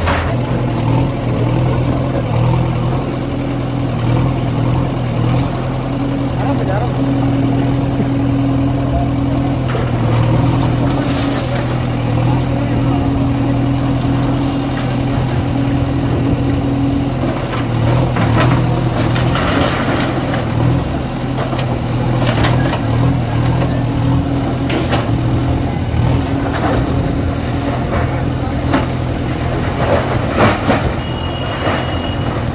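JCB backhoe loader's diesel engine running steadily as its bucket pushes down a concrete wall, with scattered knocks and crashes of breaking masonry and rubble through the middle and later part.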